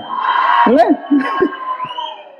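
Indistinct voices and brief vocal sounds, with a thin steady tone running under them that rises in pitch near the end.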